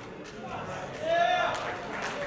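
Voices in a room full of people, with one loud, high-pitched shout about a second in.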